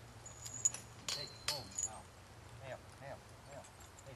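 Metal harness hardware clinking and ringing a few times in the first two seconds, as horses are hooked to a chuckwagon.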